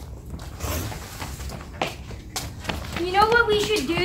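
Scattered light taps and knocks over a faint rumble, then a boy starts talking about three seconds in.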